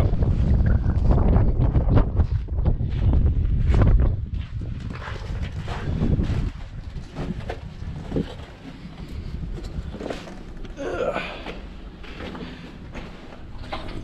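Wind buffeting the microphone for about the first four seconds, then dropping away as footsteps crunch and knock on loose rock and gravel inside a concrete bunker.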